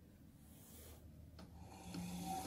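Near silence with a faint click about one and a half seconds in, then the electric radiator cooling fan of a C6 Corvette faintly starting to hum near the end as it is switched on to its low speed.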